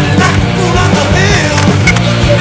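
Skateboard riding a concrete bowl, its wheels rolling and its trucks scraping along the metal coping, with a few sharp clacks, under loud punk rock music.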